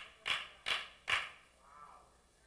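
A man laughing breathily into a microphone: a run of short wheezy exhalations, about two or three a second, ending in a faint voiced sound.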